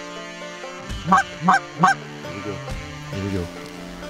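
Three quick, loud Canada goose honks about a third of a second apart, followed by softer honking, over a background music track.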